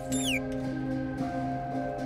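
Tense background score of long, held notes layered at several pitches. A brief high squeaking chirp from a fire ferret falls away in the first moment.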